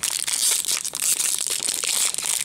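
Foil wrapper of a Topps baseball card pack crinkling and crackling continuously as hands squeeze and handle it.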